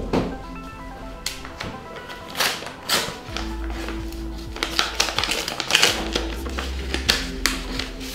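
A paper envelope being opened by hand and the folded paper inside pulled out, rustling and crackling in a series of short bursts, over background music with held notes.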